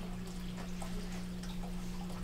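Room tone in a presentation room: a steady low hum with a few faint, scattered small clicks and rustles.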